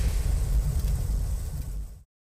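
Low rumbling tail of a cinematic trailer's closing impact hit, with a fading hiss above it. The rumble dies away and cuts off to silence at the very end.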